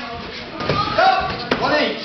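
A single sharp slap of a sparring blow landing on padded protective gear, about a second and a half in, among voices.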